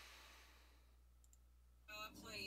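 Near silence: a faint breathy hiss fades out, a faint mouse click comes about a second in, and the resumed video's speech starts just before the end.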